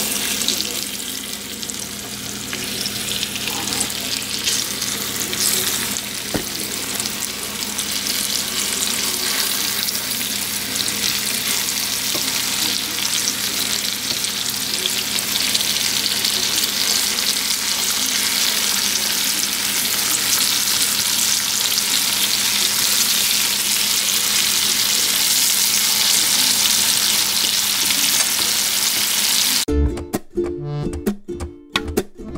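Sliced red onions sizzling in oil in a nonstick frying pan while being stirred with a wooden spoon. The sizzle is steady and grows gradually louder, with a faint steady low hum underneath.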